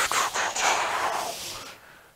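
Hands rubbing and sliding over a large cardboard box, a scuffing noise that fades out near the end.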